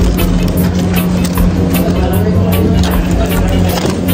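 Background music with a steady beat and a prominent bass.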